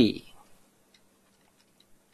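The tail of a spoken word, then a few faint, scattered clicks of computer keys being pressed to flip between windows with the task switcher, over a faint steady hum.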